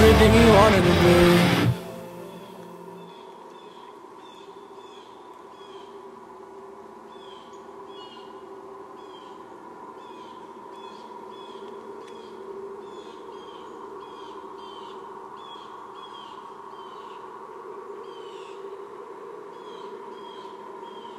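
Loud band music cuts off about two seconds in. It gives way to a quiet bed of many short, repeated bird chirps over a steady low hum.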